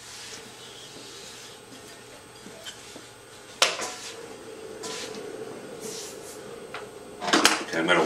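Faint steady hum of a running potter's wheel as a wire tool works a clay pot, with one sharp click about three and a half seconds in; a man starts speaking near the end.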